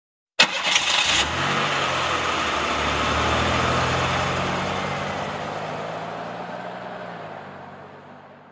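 Car engine sound effect: a sharp crackling burst as the engine starts, then it runs at a steady pitch and gradually fades out.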